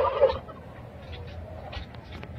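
Domestic turkey toms gobbling: a loud rattling gobble trails off about half a second in, and the pen then goes much quieter, with only faint scattered sounds.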